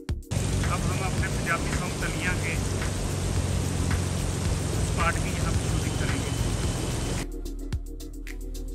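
Steady rushing and splashing of fountain jets and a cascade spilling into a stone water channel. Brief faint calls sound over the water a couple of times. Background music cuts out just after the start and comes back near the end.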